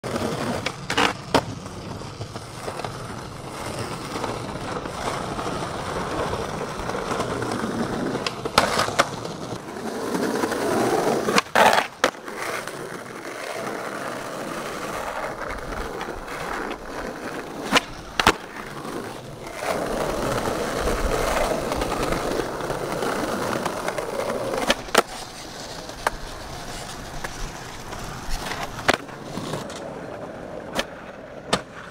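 Skateboard wheels rolling over concrete, a steady rough rumble. It is broken every few seconds by pairs of sharp clacks about half a second apart, the board popping and then landing.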